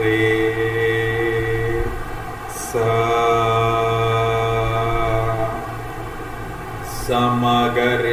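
A man singing Indian sargam syllables (sa, re, ga, ma) unaccompanied, in long held notes. One note ends about two seconds in, another is held from just under three seconds to about five seconds and then fades, and a new, moving phrase begins near the end.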